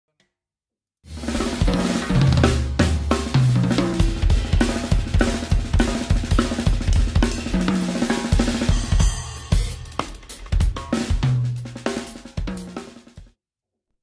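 Drum kit played with kick drum, snare, hi-hat and cymbals over a backing track with held bass notes. It starts about a second in and ends shortly before the end.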